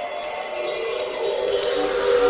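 Shimmering chime sound effect with sustained tones beneath it, slowly growing louder. It is the sparkle sting of an animated logo.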